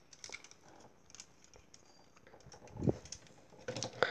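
Light, scattered clicks of Lego and Bionicle plastic parts being handled as the figure is set up on its clear stand, with a duller, louder knock about three seconds in.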